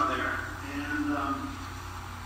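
A man speaking, his voice trailing off within the first second and a half, over a steady low hum.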